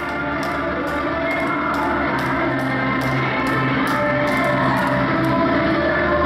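Upbeat aerobics workout music with a steady beat of about two strokes a second.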